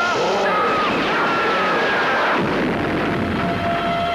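Film-trailer sound effects of explosions and crashing, mixed with wavering pitched sounds that rise and fall. A steady tone comes in a little past halfway.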